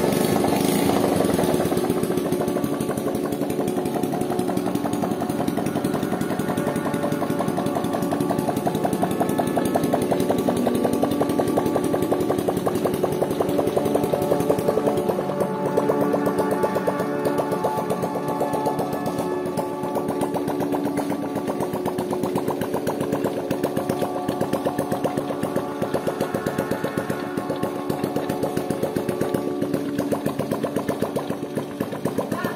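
Homemade ATV's 125cc single-cylinder motorcycle engine idling steadily, its pitch drifting slightly now and then.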